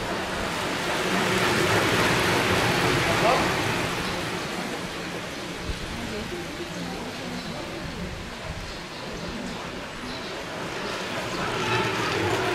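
Outdoor trackside background noise: a steady even hiss with faint voices, growing louder from about one to four seconds in and then easing.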